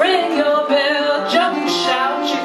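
A woman singing a ragtime-blues song to her own metal-bodied resonator guitar accompaniment.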